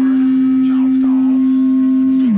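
A loud, steady pure tone held at one low pitch, with faint sounds beneath it.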